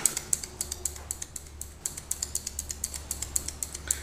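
Fiskars scissors snipping over and over at paracord: a fast, irregular run of sharp clicks, about five a second. The blades are struggling to get through the cord and chew at it bit by bit, leaving a frayed, ugly cut.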